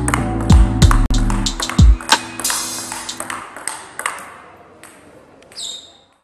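Table tennis ball clicking sharply off bat and table over background music with heavy bass hits. The music fades out about halfway through, and the fainter ball clicks keep going, dying away near the end.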